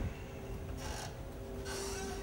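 Footsteps and the rustle of a lab coat as people walk through a room, with a faint steady hum underneath.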